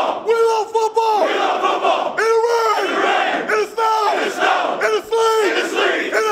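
A team of football players shouting a chant together in a locker room, loud group yelling in short repeated phrases with brief gaps between them.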